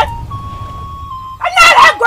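Background film music of long held tones over a low rumble, then a loud voice cries out in a ritual chant about a second and a half in.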